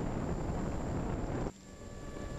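Wind buffeting an outdoor microphone: a steady, low rushing noise that cuts off abruptly about one and a half seconds in.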